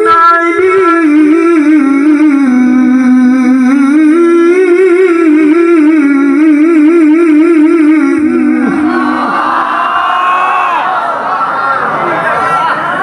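A male qari singing one long, wavering melismatic line through a microphone and PA. The line ends about eight and a half seconds in, and the crowd breaks into chatter and cheering.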